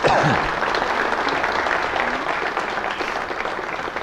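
Audience applauding, a dense steady clapping that eases off slightly near the end.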